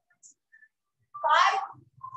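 A single short, high-pitched cry about a second in, lasting about half a second, with its pitch bending up and down.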